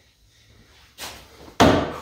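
A knock, then a heavy thump about a second and a half in: the loaded workbench dropping back onto its feet as its lift wheels are released.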